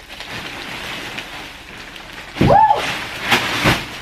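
Plastic bag crinkling and rustling as it is handled and dug through, with two sharper rustles in the last second.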